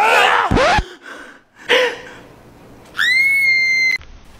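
A young man screaming in pain, a loud yell with its pitch sliding, then a short second cry. Near the end comes a high whistle-like tone that rises quickly and holds steady for about a second.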